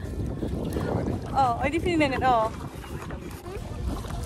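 Steady low wind noise on the microphone mixed with water noise from a tandem kayak being paddled. A voice gives one drawn-out cry with a wavering pitch about halfway through.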